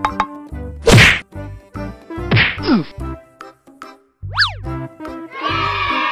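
Bouncy background music with a steady bass beat, overlaid with cartoon sound effects: a loud whack about a second in for the ball being kicked, a falling whistle-like glide near the middle, and a quick rising-and-falling whistle about four seconds in. A held musical chord comes in near the end.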